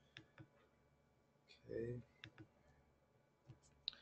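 Near silence with a few faint, sharp clicks scattered through it, and a short voiced sound from a man's voice about halfway in.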